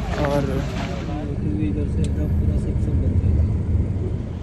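Low, steady rumble of a motor vehicle running on the road, with a faint steady hum and a couple of light clicks.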